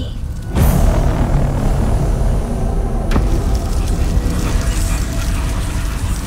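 Horror trailer sound design: a sudden loud boom about half a second in, swelling into a sustained deep rumbling drone. A single sharp hit cuts through about three seconds in.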